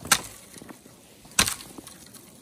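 Hatchet chopping into a dead sapling: two sharp blows on dry wood, about a second and a half apart.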